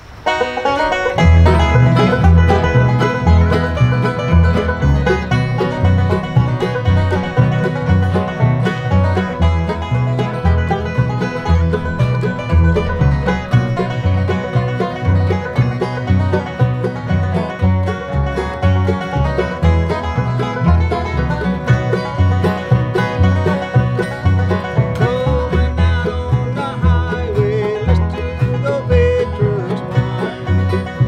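Bluegrass band playing on acoustic instruments: banjo, mandolin, two acoustic guitars and upright bass. The music starts suddenly, and the upright bass comes in with a steady, even beat about a second in.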